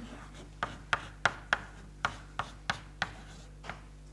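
Chalk writing on a blackboard: a quick run of sharp taps and short scratches, about three a second, over a faint steady hum.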